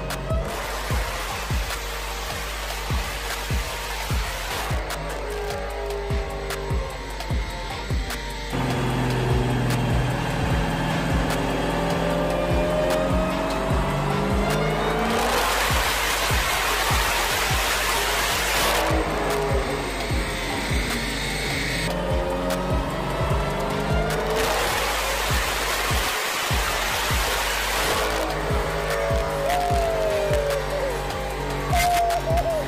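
Supercharged 6.2-litre Hemi V8 of a modified Dodge Challenger Hellcat, fitted with a 2.80 supercharger pulley, making full-throttle pulls on a chassis dyno. The engine note sweeps up and down in pitch several times under background music with a steady beat.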